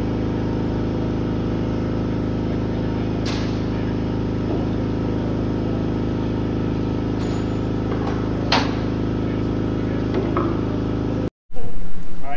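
Steady machine hum of constant pitch with overtones, with a couple of light metallic clinks about three and eight and a half seconds in; it cuts off suddenly near the end.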